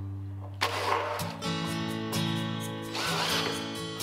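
Instrumental background music with held notes and a light, regular beat.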